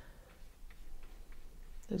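A paintbrush dabbing acrylic paint onto a canvas on an easel, making a few faint, light ticks in an otherwise quiet room.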